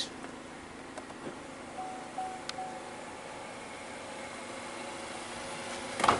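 Steady mechanical hum with faint even tones running under it. A short faint tone sounds in two or three pieces about two seconds in, with a light click in the middle of it.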